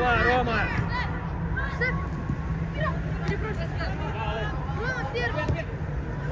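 Several high young voices calling and shouting in short bursts during a youth football game, over a steady low hum.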